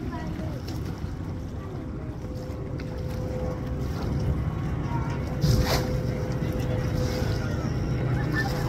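Low wind rumble on the microphone with faint voices in the background, a faint steady hum coming in about a quarter of the way through, and one sharp knock a little past halfway.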